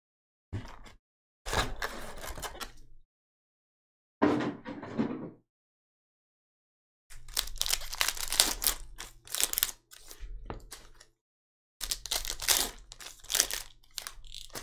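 Foil trading-card pack wrappers crinkling and tearing open, in a series of short crackly bursts separated by silent gaps.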